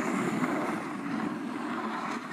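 Plastic sled sliding and scraping over groomed, packed snow: a steady, rough rushing noise.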